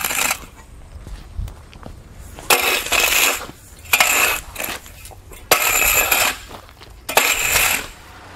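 A flat metal landscape rake scraping and dragging joint sand across a concrete slab, spreading it thin to dry. The strokes come about every one and a half seconds.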